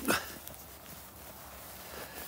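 Boots walking on crusted snow, with one louder, short sound right at the start, followed by quieter steps.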